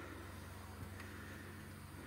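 Quiet background noise with a faint, steady low hum.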